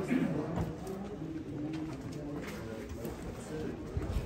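Pigeons cooing: a run of short, low, even coos repeating, with people's voices murmuring underneath.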